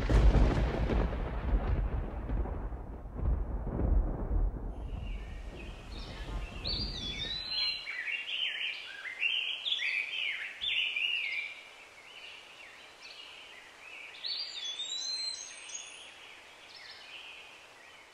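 A sudden deep boom at the start that dies away in a long rumble over about seven seconds, followed by birds chirping and singing that fade out near the end.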